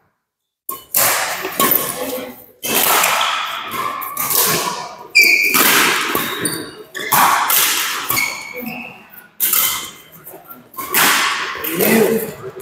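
Badminton rally: racket strings striking the shuttlecock about once a second, each hit sharp and ringing in the hall. Short high squeaks from shoes on the court floor run between the hits.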